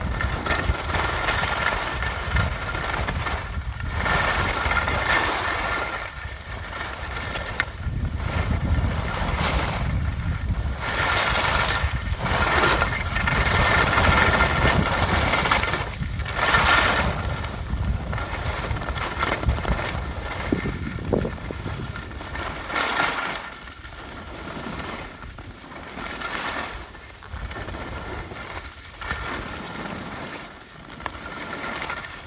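Skis sliding and scraping over packed snow at speed, with wind rushing across the microphone. The noise swells and fades every few seconds through the turns.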